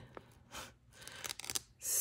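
Faint rustling and light clicks of paper sticker sheets being handled, with a quick breath drawn in near the end.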